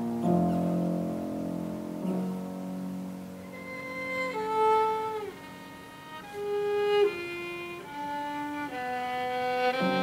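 Violin and grand piano playing together: piano chords under a slow, high violin melody that slides down between some of its notes.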